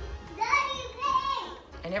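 A young child's high-pitched voice calling out for about a second.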